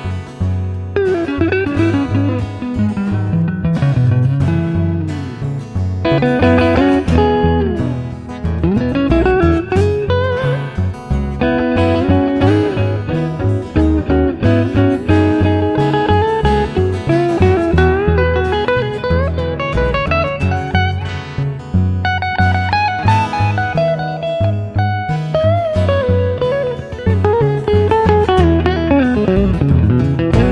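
Instrumental guitar break: a hollow-body electric archtop guitar plays a melodic lead line with gliding, bent notes over strummed acoustic guitar and a plucked upright double bass.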